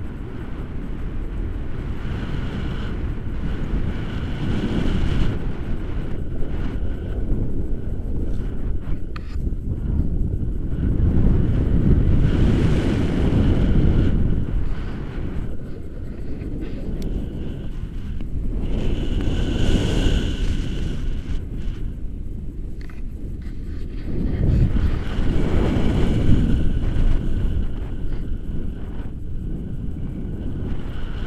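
Airflow buffeting the camera microphone in flight under a paraglider, a low rumble that swells and eases in gusts every several seconds. A faint high tone comes and goes a few times.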